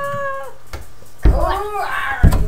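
A young child's wordless vocal noises: a held note that ends about half a second in, then a loud, meow-like squeal that rises and falls in pitch.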